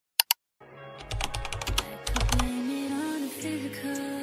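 Channel intro sting: after a brief silence, two sharp clicks, then a quick run of clicks over low thumps, giving way to a short melody.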